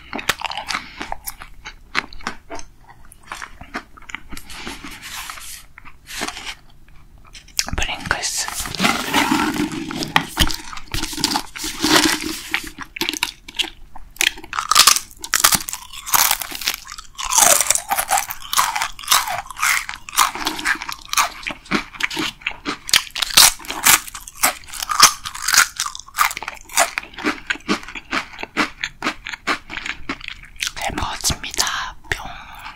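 Close-up mouth sounds of eating: soft chewing of a wafer ice-cream sandwich at first, then from about eight seconds in loud, rapid crunching of Pringles potato crisps being bitten and chewed.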